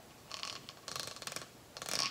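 Metal ball chain from a ceiling-fan pull rattling and clicking as it is handled, in three short spells, the last the loudest.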